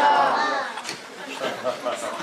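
A voice speaking over the chatter of a crowd of children in a large, echoing room.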